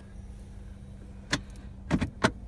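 Two short, sharp clicks of the car's dashboard controls being pressed, over a steady low hum in the cabin.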